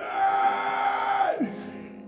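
A voice holding one long shouted cry for about a second and a half, its pitch dropping sharply at the end, over soft background instrumental music.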